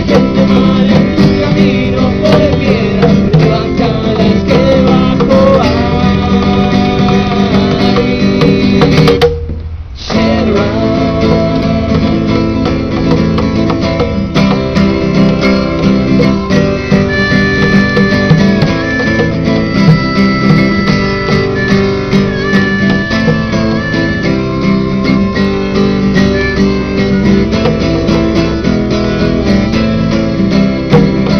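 Acoustic guitar played live, strummed and picked, joined in the second half by a harmonica holding long notes with small bends. The sound drops out briefly about a third of the way in.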